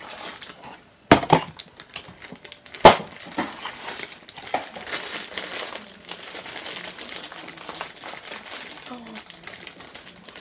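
Crinkling and rustling of a foil wrapper and small cardboard box as a mystery mini figure is unwrapped by hand, with two sharp clicks about one and three seconds in.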